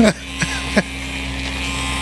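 Electric hair clippers running during a haircut, with a steady buzzing hum.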